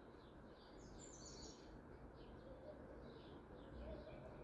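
Faint chirping of small birds: short high calls repeated throughout, with a brighter run of chirps about a second in, over a low steady background noise.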